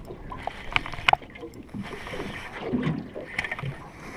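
Handling noise from fishing gear and the small aluminium boat, with two sharp clicks about a second in, over a low wash of wind and water. Faint, indistinct voices come in near the end.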